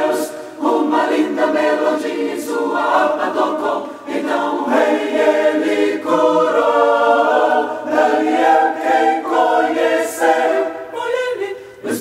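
Mixed choir singing a cappella in Portuguese in close four-part gospel harmony, ending the David verse on "rei ele curou!" and then coming in loudly on "Daniel, quem conheceu" in the later part.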